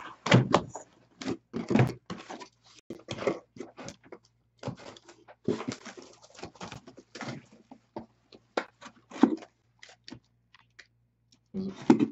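Cardboard shipping box being opened by hand: flaps bent back and scraped, with irregular thunks and knocks of cardboard and its contents.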